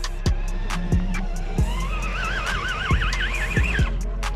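Background music: an electronic beat with a steady kick drum and bass, and a wavering, warbling synth line in the second half.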